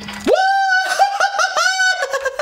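A man singing a high falsetto 'aaah': one long held note, then four short ones at the same pitch.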